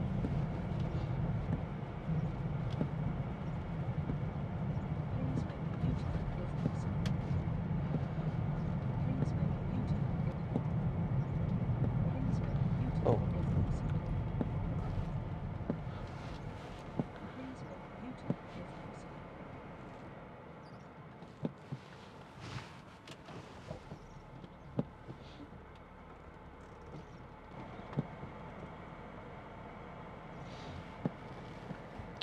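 In-cabin road and engine noise of a BMW X5 with a six-cylinder diesel, driving on a wet lane: a steady low rumble that fades about halfway through as the car slows, leaving a quieter hum. A few scattered sharp ticks sound in the second half.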